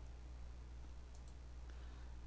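Faint room tone with a steady low hum and a few faint computer-mouse clicks.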